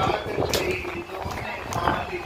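Speech: a man's voice over a microphone and loudspeaker, with background chatter from a seated audience.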